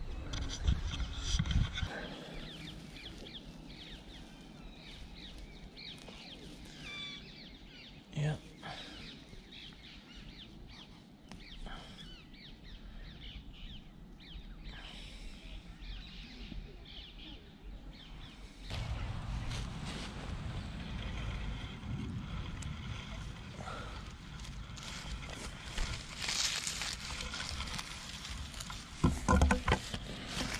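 Outdoor ambience of rustling and handling noise as hands and feet move through grass. A steadier low rumble sets in about two-thirds of the way through.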